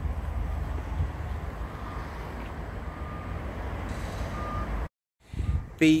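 Steady low rumble of outdoor background noise, with a few faint short beeps from a vehicle's reversing alarm. The sound cuts out abruptly about five seconds in, and a man's voice starts just before the end.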